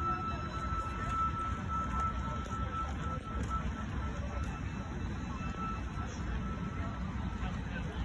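Busy city-square ambience: a steady low rumble and the noise of a crowd of people. A thin, high, held note of music carries on faintly and fades out about seven seconds in.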